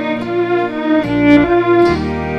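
Several electric violin parts layered in harmony: a bowed melody over held lower notes, changing pitch every half second or so, with a low bass line beneath.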